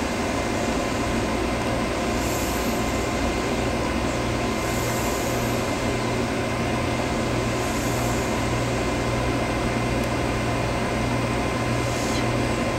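Steady low hum and room noise, with three faint, short hisses a few seconds apart as an e-cigarette with a freshly cleaned atomizer is puffed on.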